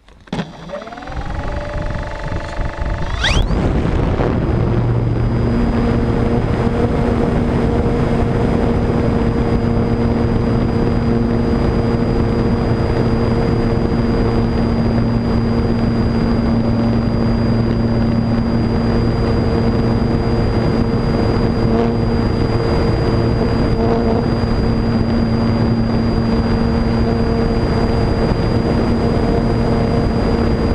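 Electric motor and propeller of a Multiplex Cularis RC motor glider spinning up with a rising whine over the first few seconds, then running at steady power: a steady hum with a thin high whine, over a rush of airflow, heard from a camera on the plane's nose.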